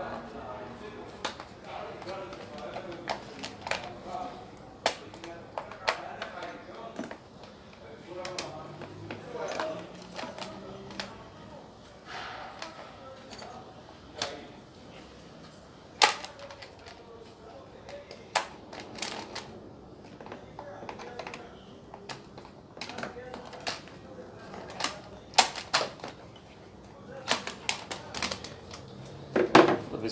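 Scattered clicks and knocks of a wrench and plastic housing parts as the top cover of a Stihl MS 660 chainsaw is unfastened and lifted off, with the sharpest knock about halfway through as the cover comes away.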